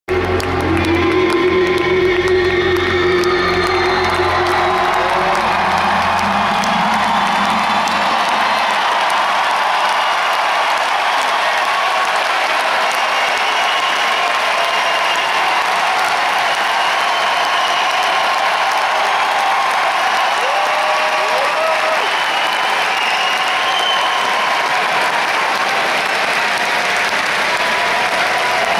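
A large concert crowd cheering and applauding continuously, with occasional shouts rising above it. Music with low held notes plays under the crowd for roughly the first eight seconds, then fades out.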